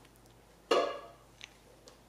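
Red plastic party cups clacking as one is set on top of a cup pyramid, one sharp clack that quickly fades, followed by two faint ticks.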